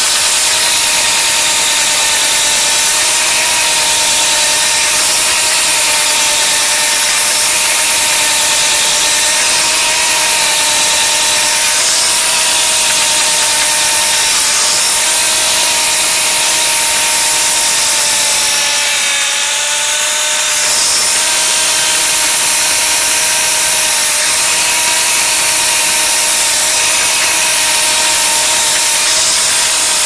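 Electric drain-snake machine running steadily, its spinning cable turning inside a PVC drain pipe as it is fed toward a clog of paper, roots and sludge. It gives a constant motor hum with a hiss over it, and the pitch sags briefly about two-thirds of the way through.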